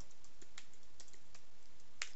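Computer keyboard typing: a few faint, separate key clicks over a steady low hiss.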